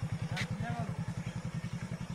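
Small single-cylinder motorcycle engine running at low idle: a steady, even putter of rapid low beats.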